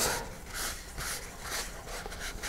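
Paper towel rubbing over a paper model-rocket transition cone in short repeated strokes, wiping away excess thin CA (super) glue.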